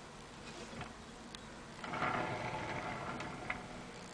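Faint handling noise from the lacquered tray: a few light clicks, then about a second and a half of rustling from about two seconds in, ending in a click.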